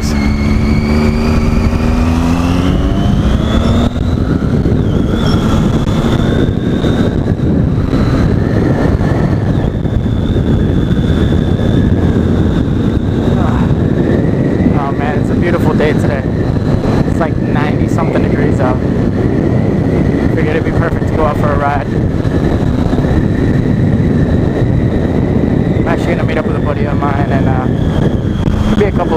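2012 Triumph Daytona 675's three-cylinder engine pulling the motorcycle along at street speed. It rises in pitch over the first few seconds as it accelerates, then runs steadily, with wind noise on the microphone.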